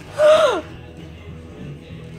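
A child's short, loud gasp-like cry about a quarter second in, falling steeply in pitch, followed by quieter background.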